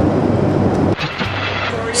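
Airliner cabin noise in flight: a steady rushing of engines and airflow with a low hum. About a second in it cuts off abruptly, giving way to quieter city street background noise.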